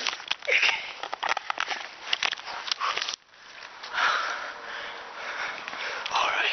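A person breathing and sniffing close to the microphone while climbing a tree, mixed with clicks and rustling from the handheld camera rubbing against clothing and branches.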